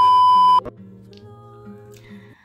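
Television colour-bars test tone: a loud, steady 1 kHz beep used as an editing transition effect, cutting off abruptly a little over half a second in. Faint steady tones linger after it.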